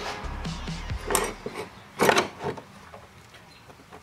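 Two sharp knocks, about a second in and about two seconds in, from the cut metal strut housing being handled on the workbench.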